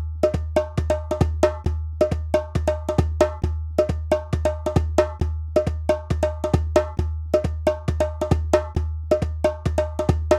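Drum music: a steady, fast hand-drum pattern of about four to five strikes a second. Each strike has a ringing, knock-like mid tone, and a deep bass pulse sits under the beat.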